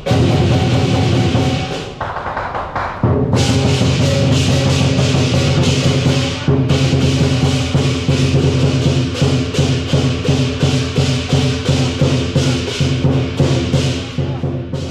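Lion dance percussion: a large drum beaten in a steady driving rhythm with clashing cymbals and gong, briefly thinning about two seconds in.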